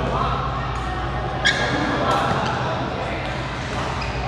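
Badminton play in a large indoor hall: rackets striking the shuttlecock and court shoes squeaking, the loudest a sharp smack with a brief squeal about a second and a half in. Voices carry in the background.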